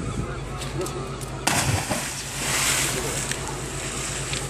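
A person jumping off a stone pier into the sea: a sudden splash about a second and a half in, then a couple of seconds of rushing spray and churning water, over a steady low hum.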